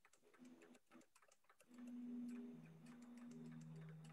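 Faint repeated clicks of a spoon knocking against a cup while stirring hot chocolate mix into room-temperature water. From about halfway in, someone hums a low 'mm', falling in pitch.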